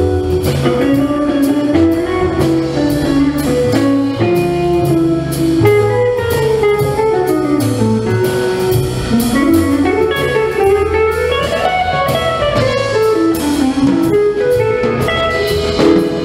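Jazz combo playing: a guitar carries a running single-note melody over a walking bass line and a steady cymbal beat from the drum kit.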